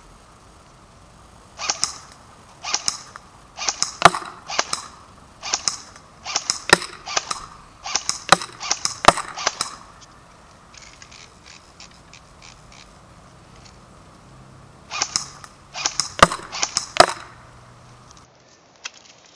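S&T G36C Sportsline airsoft electric gun firing single semi-automatic shots, each a sharp crack from the gearbox and piston. The shots come in quick succession for about eight seconds, then after a pause a few more follow near the end.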